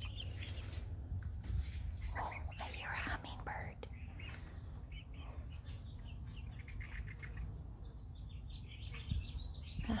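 Scattered faint bird chirps and soft calls over a low steady rumble, with a cluster of soft sounds a couple of seconds in.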